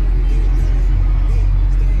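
Steady low rumble inside the cabin of a Dodge Charger Scat Pack, its 392 (6.4-litre) HEMI V8 idling, with faint voices underneath.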